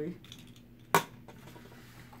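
A single sharp metallic clink about a second in, with a short ring, as Beyblade spinning tops knock against each other in a small cardboard box, followed by faint light clicks.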